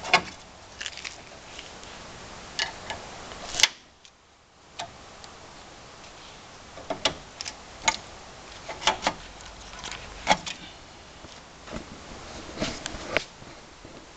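Irregular sharp clicks and light knocks of hands handling fittings and parts on a kart frame, a dozen or so spread unevenly, over a steady background noise that drops out briefly about four seconds in.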